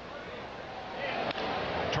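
Ballpark crowd noise, then the sharp crack of a wooden bat hitting a pitched ball about a second and a half in, sending a ground ball toward third; the crowd gets louder as the play starts.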